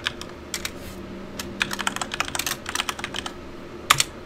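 Typing on a computer keyboard: a few scattered keystrokes, then a quick run of keystrokes through the middle, and one louder click just before the end.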